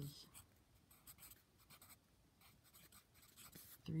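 Pencil writing on lined notebook paper: faint, irregular scratching strokes.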